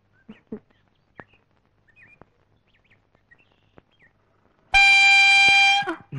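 A vehicle horn sounds one steady blast of just over a second, near the end. Before it, faint bird chirps.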